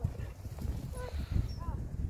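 A horse cantering on a soft arena surface, its hoofbeats coming as dull, irregular low thuds.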